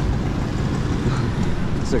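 Steady rumble of road traffic on a busy city street, with no single vehicle standing out.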